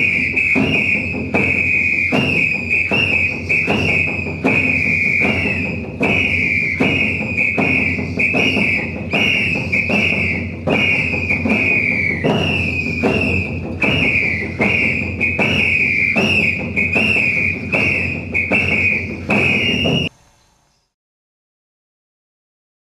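A high-pitched whistle blown in short repeated blasts, about two a second, over a dense lower sound, stopping suddenly near the end.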